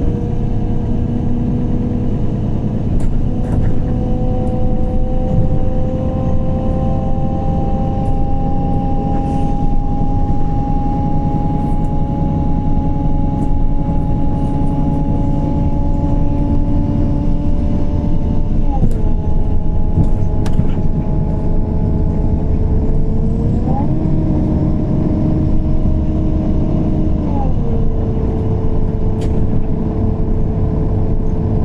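Inside a 2014 MAN Lion's City CNG bus under way: the MAN E2876 natural-gas engine and ZF Ecolife automatic drivetrain running over a steady rumble. A whine climbs slowly in pitch, drops sharply a little past halfway, jumps up again for a few seconds and falls back near the end.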